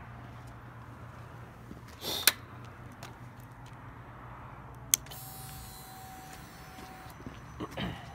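KTM 890 Duke R's fuel pump priming as the ignition is switched on, engine not yet started: a click, then a steady whine for about two seconds. An earlier sharp click and a low steady hum are also heard.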